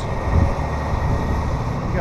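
Steady low rumble of motor traffic, a vehicle engine's drone under road noise.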